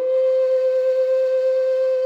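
A Chieftain low D whistle playing a slow air: one long, steady, breathy held note.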